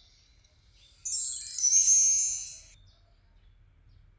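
A logo-animation sound effect: a short, high-pitched hiss with faint ringing tones that starts suddenly about a second in, swells, then fades out under two seconds later.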